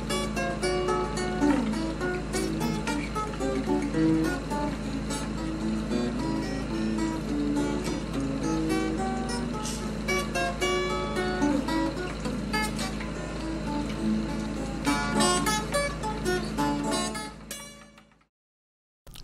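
Highlife guitar solo: quick runs of picked single notes over a steady low hum, fading out near the end.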